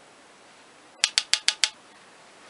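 A makeup brush tapped five times in quick succession against an eyeshadow palette, about six sharp taps a second, starting about a second in, knocking off excess powder after picking up the shade.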